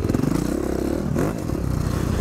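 Four-stroke single-cylinder enduro motorcycle engine running under way on a gravel track, the revs rising and falling as the rider works the throttle, heard from the rider's own bike, with rattling from the rough ground.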